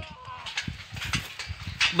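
Faint, distant shouting voices in the open, with a few soft knocks and thuds.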